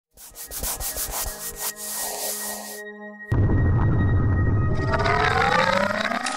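Sound effects for an animated intro logo. A run of rapid mechanical clicks over a hiss lasts nearly three seconds, then a sudden deep boom comes in a little past three seconds and holds. Rising tones sweep up near the end as the logo appears.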